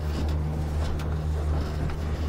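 Suzuki outboard motor running steadily under way, a low even drone heard from inside a boat's enclosed hardtop cabin, over a haze of wind and water noise.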